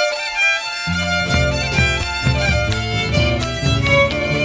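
Tarija folk music: a fiddle plays the lead melody of an instrumental, with lower accompanying instruments and a steady beat joining about a second in.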